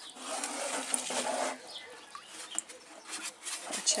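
Water gurgling into a plastic watering can held under in a barrel of rainwater, loudest in the first second and a half, then scattered splashes and drips as the full can is lifted out.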